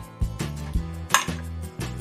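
Kitchen knife slicing down into an eggplant on a wooden cutting board, giving several short knocks and clicks as the blade meets the board and the steel chopsticks used as cutting guides, the sharpest about a second in. Background music plays underneath.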